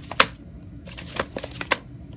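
A VHS tape case being handled, giving a string of sharp clicks and rustles. The loudest click comes just after the start, and a quicker run of lighter clicks follows about a second in.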